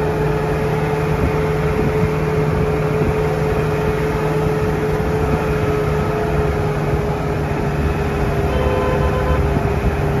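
Vehicle engine running steadily with road rumble, heard from on board while driving, a constant hum of unchanging pitch.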